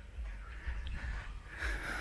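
A low rumble of wind and handling on the microphone, with a breathy hiss near the end like an exhale close to the mic.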